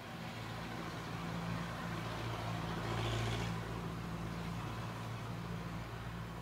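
Street traffic: a motor vehicle passes on the road alongside, its engine hum and tyre noise swelling to a peak about halfway through and then easing off over a steady low engine drone.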